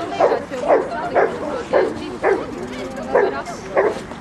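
A small dog, a Jack Russell terrier, barking over and over in short yaps at about two a second while it runs an agility course.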